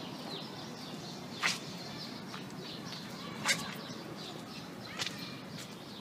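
Outdoor street background with a low steady hum and birds chirping faintly, broken by three sharp clicks, the first about a second and a half in and the others about two and three and a half seconds after it.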